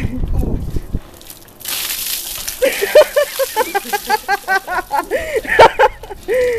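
A bucket of ice water tipped over a man, landing in one splashing rush about one and a half seconds in, followed by his rapid string of short, rising-and-falling cries, about four a second, at the shock of the cold.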